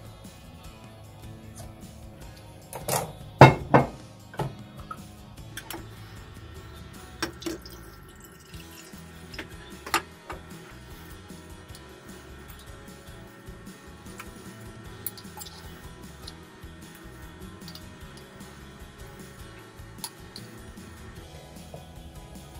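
Quiet background music with a few sharp clinks of a knife and fork against a glass pickle jar, the loudest a pair about three to four seconds in and another about ten seconds in.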